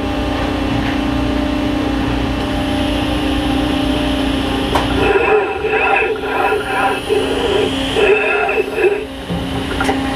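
Injection molding press and its robot cell running with a steady machine hum. From about five seconds in, an indistinct voice sounds over the hum.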